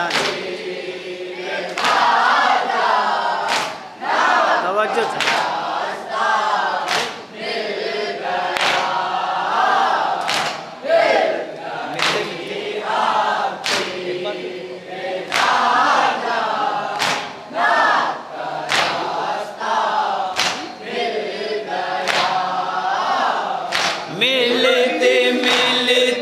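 A group of men chanting a mourning lament (nauha) in chorus while beating their chests in unison (matam), the hand strikes landing as sharp slaps on a steady beat a little under two seconds apart.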